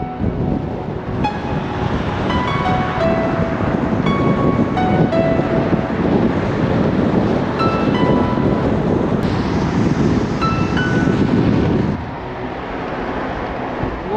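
Steady wind rush and road noise from a car driving at speed, with a sparse melody of short, chime-like notes playing over it. The wind noise eases about twelve seconds in.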